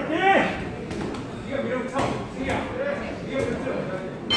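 Men's voices shouting in an echoing hall during a boxing bout: one loud yell right at the start, then scattered overlapping calls, with a few sharp thuds in between.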